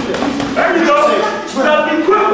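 Men's voices talking and calling out, with no clear words.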